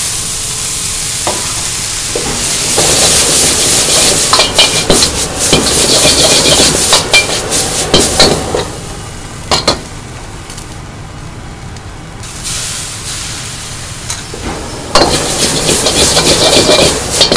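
Freshly drained instant noodles sizzling loudly as they hit a hot wok over a gas burner, then being stir-fried, with a metal ladle scraping and clanking against the wok. The sizzle dies down past the middle and comes back loud near the end.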